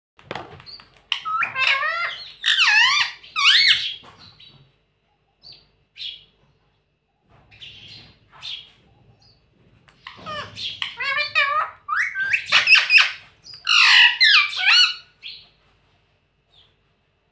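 Indian ringneck parakeet calling in two loud bursts of quick, wavering, high-pitched squawks and chatter, each a few seconds long, with a few short soft calls between.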